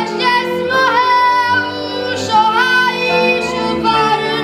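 A boy singing a Moravian verbuňk song solo in long, held notes with slides between them, over a soft folk-band accompaniment of fiddle and clarinet.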